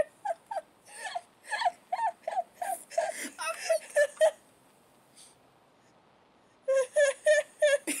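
High-pitched laughter in short rhythmic bursts, about three a second, for about four seconds. After a two-second pause it starts again near the end.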